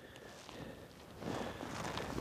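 Faint rustling handling noise as hands work the line on an ice-fishing tip-up, growing a little louder just past a second in.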